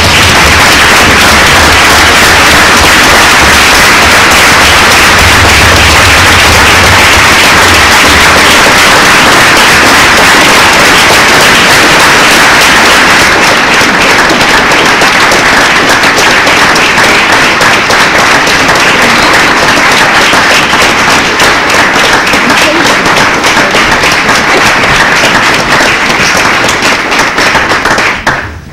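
Audience applauding, loud and steady, growing more uneven in the second half before stopping.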